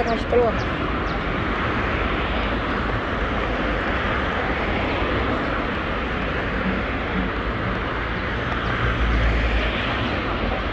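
City street ambience: a steady wash of traffic noise with indistinct voices, and a low vehicle rumble swelling near the end.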